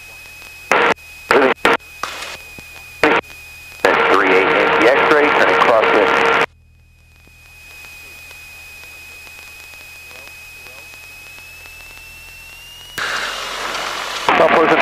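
Engine hum of a Cessna 177 Cardinal heard through the headset intercom, with a thin steady high whine, a few clicks, and a garbled radio transmission of about two and a half seconds in the middle. Near the end the whine climbs slightly and the engine noise grows louder.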